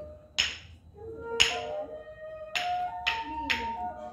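Stones struck together by hand to try to raise a spark for a fire: five sharp, irregularly spaced clicks, the loudest about a second and a half in, over flute-like background music.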